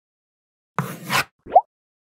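Title-card sound effects: a brief rushing swish about a second in, followed by a short pop that rises quickly in pitch.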